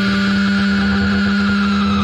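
Held closing notes of an easycore rock track: a steady low note sustains under a high tone that slides slowly downward, with no drums.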